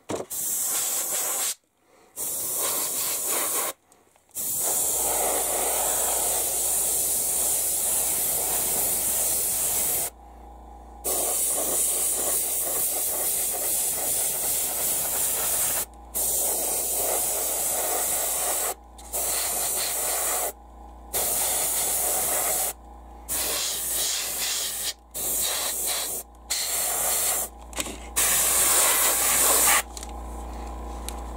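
Airbrush spraying acrylic paint in light mist coats: a steady hiss of air that starts and stops as the trigger is worked. The longest burst lasts about six seconds, with shorter, quicker bursts toward the end.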